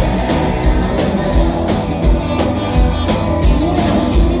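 Live rock band playing an up-tempo rock and roll song: electric guitars, electric bass and a drum kit at full volume with a steady driving beat.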